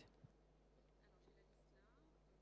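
Near silence: a faint, steady low hum of room tone.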